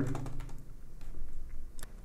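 Faint, scattered clicks of a computer keyboard and mouse in use, with one sharper click near the end, over a low steady hum.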